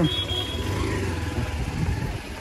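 Motorcycle engine running with a steady low pulse as the bike rides off, heard close up from the pillion seat.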